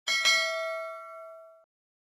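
Notification-bell sound effect from a subscribe animation: a bright double ding, struck twice in quick succession, ringing for about a second and a half before it cuts off suddenly.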